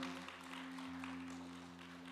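The last acoustic guitar chord ringing out and slowly fading, with faint scattered applause from the congregation.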